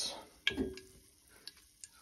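Hot molten beeswax bubbling in a stainless steel pot, giving a few faint isolated pops and ticks, with a sharper click about half a second in.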